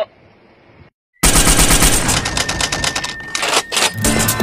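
A loud, fast rattle of many clicks a second, starting abruptly about a second in after a brief drop-out, with two sharper strikes near the end.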